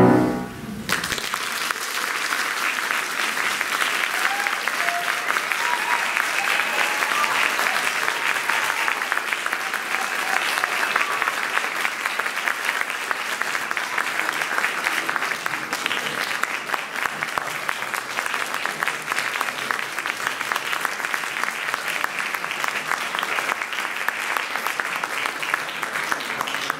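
The soprano and piano's final note ends right at the start. Then there is steady audience applause, many hands clapping, lasting about 25 seconds before it dies away.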